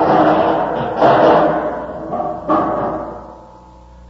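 Radio-drama sound effect of a heavy container tumbling down a flight of stairs: a loud rumbling clatter with heavy thuds about a second in and again past two seconds, dying away near the end.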